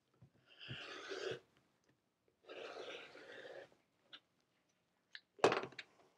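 Rotary cutter blade rolling through folded cotton along an acrylic ruler, two cuts of about a second each with a crunching rush, then a sharp knock about five and a half seconds in as the cutter is set down on the cutting mat.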